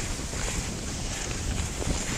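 Wind buffeting the camera microphone with a steady rumble, over the hiss of cross-country skis gliding on packed powder snow while being towed along at speed.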